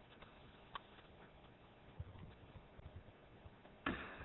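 Faint background with a few small clicks and low knocks; the loudest, a sharp click, comes just before the end.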